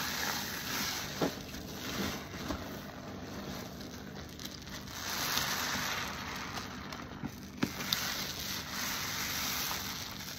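Car-wash sponges soaked in detergent being squeezed by hand, the foam squelching and crackling with bursting bubbles. It comes in slow swells as the grip tightens and lets go, with a few sharp wet pops.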